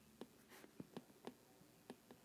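Faint, irregular light ticks and a short scratch of a stylus on a tablet screen during handwriting, about half a dozen taps spread across two seconds.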